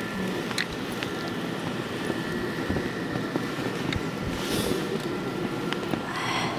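Footsteps trudging and sinking into deep fresh snow over a steady low rumble, with scattered small clicks and a short hiss about four and a half seconds in.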